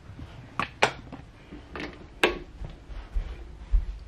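A few sharp, scattered clicks and light taps over low rumbling handling noise from a handheld camera being carried along, the rumble heavier near the end.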